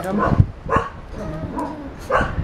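A dog giving a few short barks spaced through two seconds.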